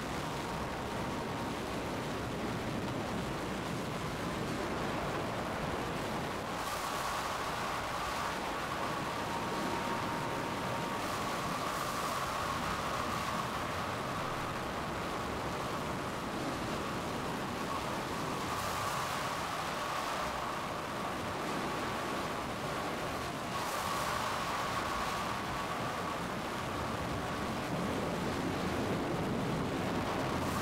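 Steady rushing tornado wind and storm noise from a film soundtrack, with brief louder gusts every several seconds.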